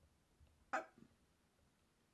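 A single brief exclamation from a woman's voice, falling in pitch, about three-quarters of a second in; otherwise near silence.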